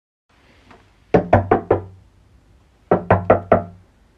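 Knocking: two rounds of four quick knocks on a hollow surface, each round about four knocks a second, the second round about a second and a half after the first.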